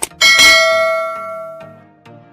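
A short click, then a notification-bell sound effect that dings once and fades over about a second and a half: the bell of a subscribe-button animation being clicked.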